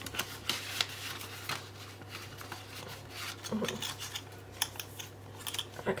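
Light rustling and small clicks of a banknote being handled and slid into a plastic pocket in a ring binder.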